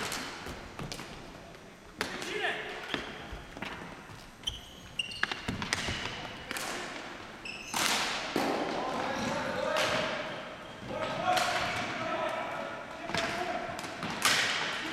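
Ball hockey play in a large gym: sharp clacks of plastic sticks and the ball hitting the hardwood floor, echoing off the walls. There are a few short high squeaks midway and players shouting toward the end.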